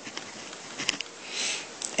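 A person's quick breath in through the nose, about a second and a half in, just before speaking again, over a steady microphone hiss, with a single faint click a little before it.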